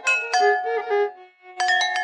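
Jalatarangam, porcelain bowls tuned with water and struck with thin sticks, playing a Carnatic melody in raga Kalyani as a quick run of ringing notes, with a violin following the melody beneath. The notes thin out a little after a second in, then a new phrase begins.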